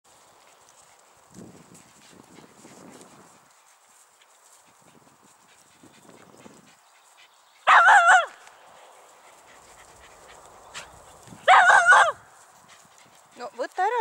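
A poodle barking in play: two short bursts of high-pitched barks about four seconds apart, with faint low sounds earlier.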